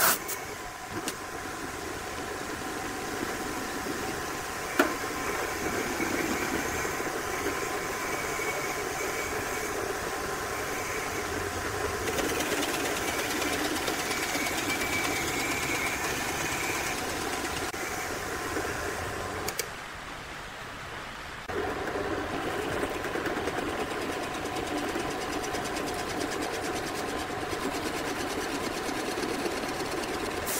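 Drill press running with a large boring bit cutting into a wooden block, a steady machine drone that drops quieter for a couple of seconds about two-thirds of the way through.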